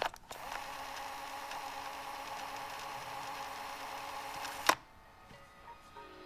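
A click, then a steady mechanical whir with a few held tones for about four and a half seconds, cut off by a sharp click near the end.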